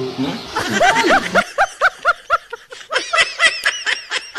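Laughter in a quick run of short ha-ha syllables, about five a second, rising higher in pitch about three seconds in.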